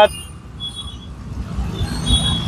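Street traffic on a wet road: motorcycles and scooters running, with tyres on the wet tarmac. A motorcycle engine grows louder near the end as it comes close.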